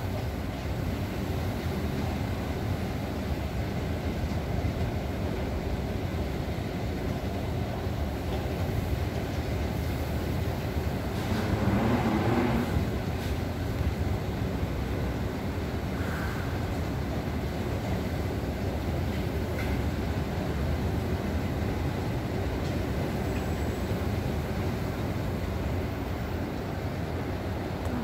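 Steady low mechanical rumble of a railway station, with a louder swell about halfway through.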